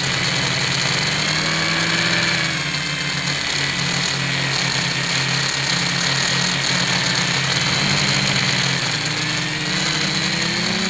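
Quadcopter's electric motors and propellers whining steadily, heard up close through the onboard camera. The pitch drifts up and down as the throttle changes during low, turning flight. The propellers are not yet balanced.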